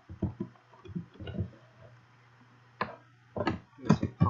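Computer keyboard keys being typed: a few scattered, irregular clicks, over a steady low electrical hum.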